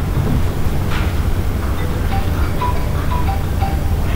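Steady low rumble from a handheld microphone while it is carried, with a few faint short high tones in the second half.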